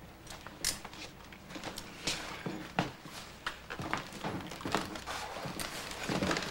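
Quiet, irregular footsteps and shuffling, with a few light knocks, of people moving about in a small room.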